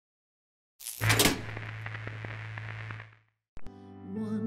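Title-card sound effect: a sudden whoosh-like hit about a second in, leaving a low steady hum with a hissy tail that fades out after about two seconds. Near the end, a click and the first sustained notes of a backing track.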